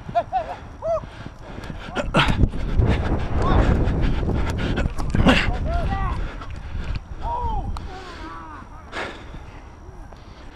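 Players shouting across an open field during a flag football play, with a loud low rumble of wind on the microphone and footfalls from about two to seven seconds in.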